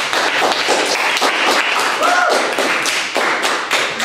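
A small group of classmates applauding, a dense run of hand claps.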